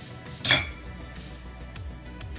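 A single sharp clink of a metal fork against glass dishware about half a second in, ringing briefly, over faint background music.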